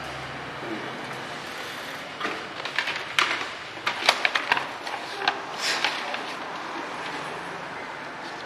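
Paper handled and rustled, a run of sharp crackles and clicks over a few seconds in the middle, over a steady background hiss.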